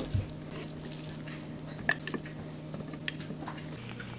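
Minced pork and shrimp paste being scraped out of a food processor bowl into a glass mixing bowl with a silicone spatula: soft squishing with a few light knocks and clinks of glass and plastic, the sharpest about two seconds in, over a steady low hum.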